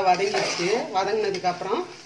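A spoon scraping and clinking against the inside of a pressure cooker as a thick potato and pea masala is stirred. A person's voice runs over the stirring.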